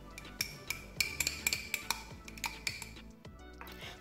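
Metal spoon clinking and scraping against a glass jar, stirring chopped peppermint leaves into almond oil, in quick irregular taps that stop shortly before the end. Quiet background music runs underneath.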